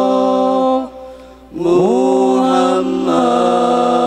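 Boys' voices singing an Arabic sholawat a cappella, in long held notes with no drums. The singing breaks off briefly about a second in, then resumes with a note sliding up into place.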